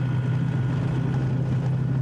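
A vehicle's engine running steadily with a low drone, heard from inside the cab while it drives.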